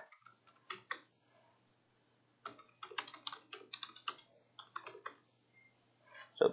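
Typing on a computer keyboard: a few keystrokes near the start, a pause, then a quick run of keystrokes over about three seconds as a short command is typed, over a faint steady hum.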